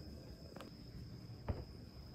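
A wooden door knocking lightly against its frame as a cat pushes at the gap with its head: a light knock about half a second in and a louder one about a second and a half in. Under it runs a faint, steady high-pitched whine.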